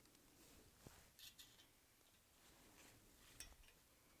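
Near silence with a few faint, light metallic clicks: about a second in, again around a second and a half, and once near the end. This is a hex key being handled and fitted to the cap screws of a pump's mechanical seal plate.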